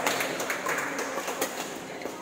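Badminton rally: rackets striking a shuttlecock, with a sharp hit at the start and another about a second and a half later, plus lighter clicks between, over the echoing background noise of a sports hall with play on other courts.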